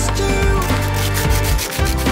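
Sandpaper rubbed by hand over the splintered edge of a freshly drilled hole in engineered wood, in quick back-and-forth scratchy strokes starting about half a second in, over background music.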